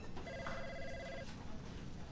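A telephone ringing faintly: one trilling electronic ring about a second long, over low background room noise.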